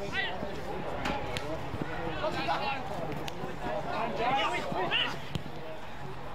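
Spectators shouting encouragement from the sideline: several raised voices calling out and overlapping, with loud high-pitched yells about halfway through and near the end.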